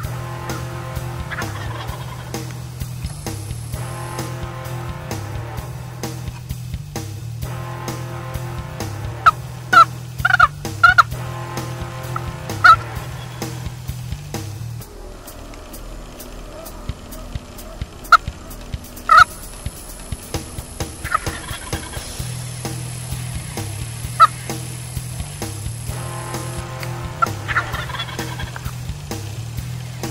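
Wild turkey tom gobbling several times, in short loud bursts clustered about a third of the way in, again a little past the middle and once more later, over a steady low background.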